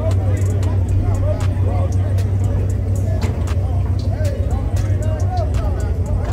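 Two V8 race cars idling at the drag strip starting line, a steady low rumble with no launch, under crowd chatter.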